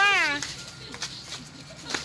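A child's high-pitched, drawn-out call, arching in pitch and ending about half a second in, followed by quieter background chatter and a short click near the end.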